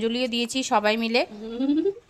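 A child's wordless vocalising: long, wavering sounds at one steady pitch, ending with a rising call near the end.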